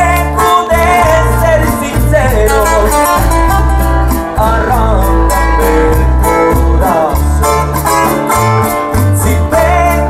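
Live Mexican trio music: acoustic guitars strumming and picking over steady bass notes, with a male voice singing the melody through a microphone and PA.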